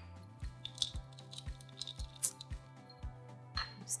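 Quiet background music: held tones over a soft, steady beat.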